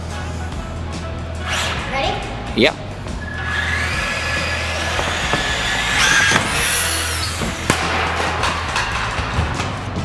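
Electric motor of a Traxxas Bandit RC buggy whining and rising in pitch as the throttle is applied, in several short runs and then a longer climb.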